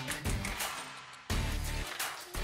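Instrumental music with a beat: low bass notes under drum hits, with a strong hit and bass note about two-thirds of the way in.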